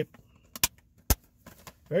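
Plastic Blu-ray case being handled and snapped shut: a few sharp clicks, a pair about half a second in and a louder one about a second in, then fainter ticks.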